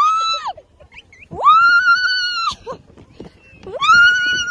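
A woman screaming on the way down a tall slide: long high squeals, one trailing off at the start, then two more about a second long each, every one rising, held and falling away.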